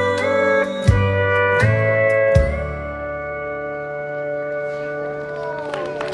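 Pedal steel guitar with electric guitar playing the closing phrase of a country song: a few chord changes over three low beats, then one long held chord that fades, with a downward steel slide near the end.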